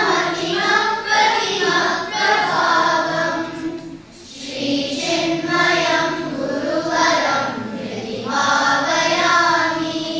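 A group of children chanting a Sanskrit stotram together in unison, with a short pause for breath about four seconds in before the chant resumes.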